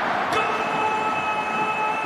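A TV football commentator's long, held goal shout, one unbroken note from about a third of a second in, over the noise of a stadium crowd cheering the goal.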